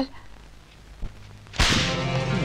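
A quiet pause with a faint knock about a second in, then a sudden sharp stab of dramatic film-score music that comes in about one and a half seconds in and holds on as sustained chords.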